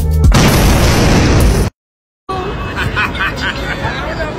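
Background music with a drum beat ends just after the start and gives way to a loud explosion-like sound effect lasting about a second and a half. It cuts off into half a second of dead silence, then voices and open-air background noise start.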